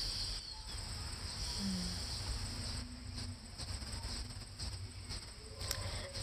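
A slow deep breath, drawn in with a soft hiss at the start, over a steady high chirring of insects and a low steady rumble.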